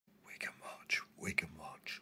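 Whispered speech: a few short syllables in a row.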